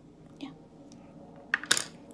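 Sharp clicks and taps on a small plastic makeup palette, handled with long nails and a concealer brush: a light tap about half a second in, then a quick, loud cluster of clicks about a second and a half in.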